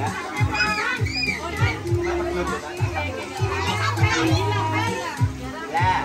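Many children's voices talking and calling out over dance music with a steady beat, about two beats a second, played through a loudspeaker.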